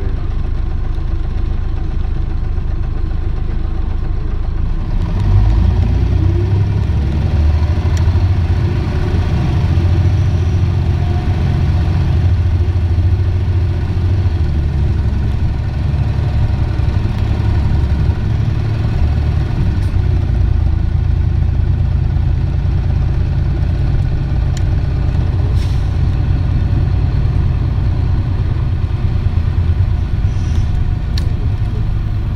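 Inside a city bus, the diesel engine of an Isuzu PJ-LV234N1 bus idles low, then about five seconds in it pulls away with a rising engine note and runs on steadily under way. A few light clicks come later.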